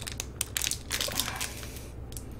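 Thin plastic packaging crinkling and crackling as it is handled. There is a run of small irregular crackles that thins out near the end.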